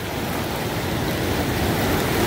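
Steady rush of whitewater river rapids.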